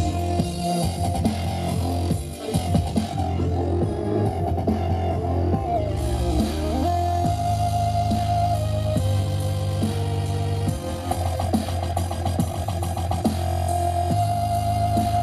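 Dubstep DJ set played loud through a stage PA, with a heavy, steady bass and a synth line that dips down and climbs back up in pitch about six seconds in.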